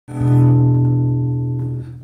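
A single held chord from acoustic guitar, mandolin and upright bass, ringing and slowly fading over almost two seconds.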